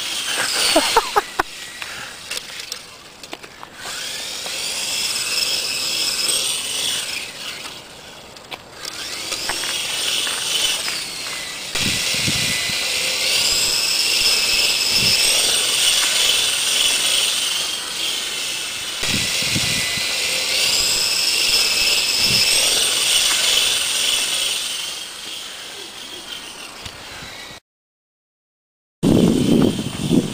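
Small radio-controlled model helicopter's motor and rotor whining at high pitch. The whine sags and then glides back up several times as the throttle is eased off and opened again. A few low thumps come through in the second half.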